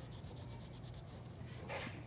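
Crayon pressed hard onto paper and drawn along the edge of a shape, a faint scratchy rubbing with repeated short strokes.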